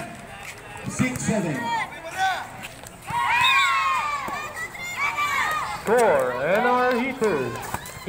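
Players and spectators shouting during a volleyball rally. A long, high-pitched shout comes about three seconds in, and a lower shout about six seconds in. A few short knocks of the ball being hit sound between them.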